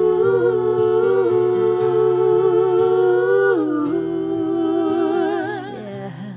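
A woman's voice holds a long wordless sung note over acoustic guitar. The note steps down in pitch a little past halfway, then wavers with vibrato and fades near the end.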